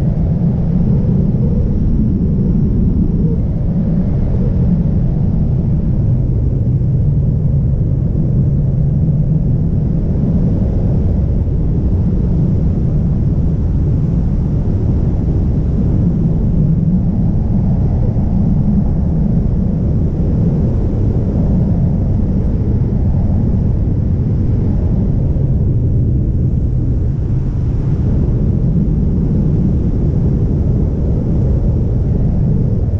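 Wind rushing over the camera's microphones in wingsuit flight: a loud, steady, deep rumble with no breaks.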